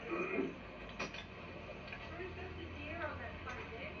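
Faint voices on an old camcorder tape heard through a TV speaker, over a steady low hum, with a single sharp click about a second in.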